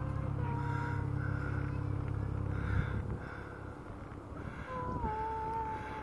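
A low, steady engine-like rumble that drops away about three seconds in, with faint thin whining tones above it that come back near the end.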